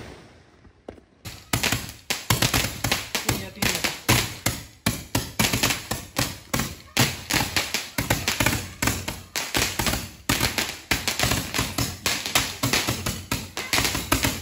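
Handheld firework tube firing a rapid, continuous stream of sharp pops, several a second, starting about a second in.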